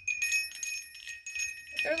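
Metal-tube wind chime with a small bell ringing as it is handled: a few tube strikes near the start, then a steady high ringing that carries on. A voice comes in near the end.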